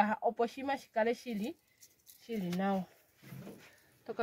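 A woman's voice: a run of quick, short words, then after a pause one longer, drawn-out vocal sound and a faint one after it.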